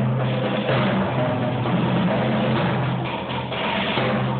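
Percussion ensemble playing, with a steady low pitch held beneath the other parts.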